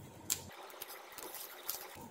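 Faint ticks and light scratching as tweezers pick at and peel the insulation tape off a small ferrite SMPS transformer's winding, with two small clicks about a second apart.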